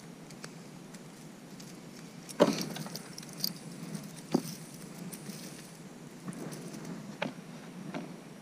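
Rummaging through a cardboard box of discarded items, with a clatter of objects about two and a half seconds in and a few sharp clicks later. A beaded necklace with a metal steer-skull pendant jangles lightly as it is lifted out.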